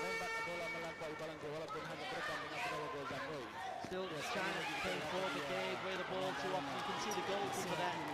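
A voice talking throughout over the sound of the hall. A held horn note carries on from before and stops within the first second.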